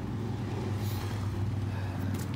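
A steady low hum with no break, with a faint rustle about a second in.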